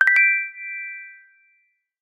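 Chime sound effect for an animated logo: a couple of quick clicks, then a bright ding of several high ringing tones that fades away over about a second and a half.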